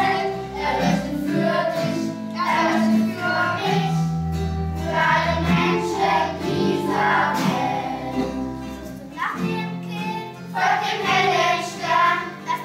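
A group of children and teenagers singing together in unison, with sustained low notes underneath. There is a short break between phrases about nine seconds in.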